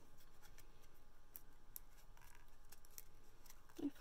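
Faint, scattered ticks and rustles of a small piece of paper being handled and curled between the fingers.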